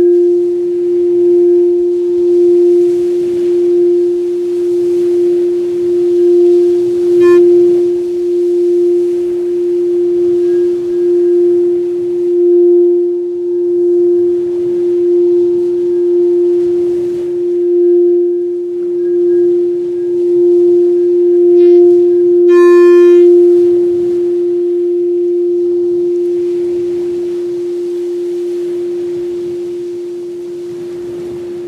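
A sustained singing-bowl drone: one steady mid-low tone with faint higher overtones, swelling and fading in a slow pulse. A brief, brighter ringing tone sounds about two-thirds of the way through, and the drone softens near the end.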